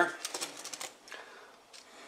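Handling of a GSI Glacier Stainless Toaster, a folded-flat stainless steel frame with a mesh plate: a quick run of light metallic clicks and rattles as it is picked up, fading out after about a second.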